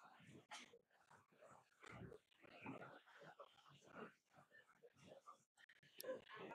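Near silence: a faint murmur of voices in the hall, with a brief gap of dead silence near the end.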